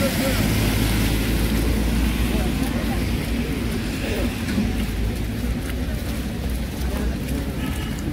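Street ambience: indistinct voices of passersby over a steady low rumble.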